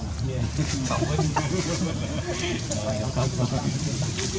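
Indistinct voices: short calls that rise and fall in pitch, several in a row, over a steady low background noise.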